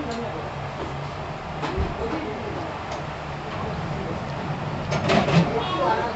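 Busy eatery ambience: background voices over a steady low hum, with a few short clinks and knocks, the loudest cluster about five seconds in.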